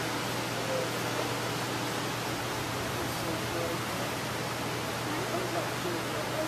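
Steady hiss and low hum of room noise in a large hall, with faint distant talking.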